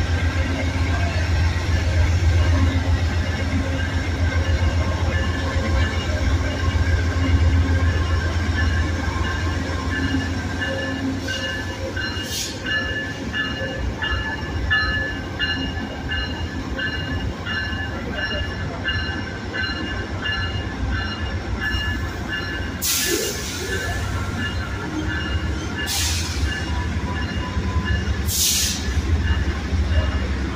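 Amtrak GE Genesis P42DC diesel locomotives idling at the platform: a steady deep engine rumble with a steady whine above it. A few short bursts of hiss break in, four in all, most of them in the last third.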